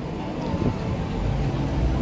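Steady low rumble of city street background noise from distant traffic.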